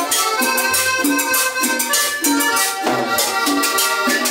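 Live cumbia band playing: accordion melody over conga drums, upright bass and a steady scraped and shaken rhythm.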